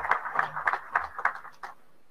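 An audience applauding, sounding thin and muffled through video-call audio. The clapping dies away near the end.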